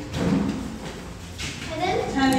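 Quiet speech: faint children's voices in the middle of a sentence, with a louder voice coming in near the end.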